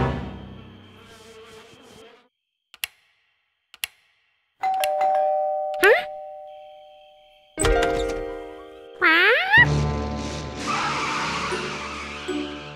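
Music fades out, then after two faint clicks a doorbell chime sounds about halfway through and again a few seconds later, each one fading away. Short rising glides in pitch fall between the chimes, and music starts up again near the end.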